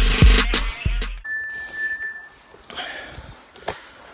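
Hip hop backing music with a heavy bass beat, cutting off suddenly about a second in. Then it goes quiet, with a short steady high tone and faint handling noise, and a sharp click near the end.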